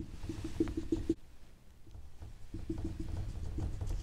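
Whiteboard marker squeaking against the board in quick short strokes while drawing a dashed line. Two runs of strokes with a short pause between them.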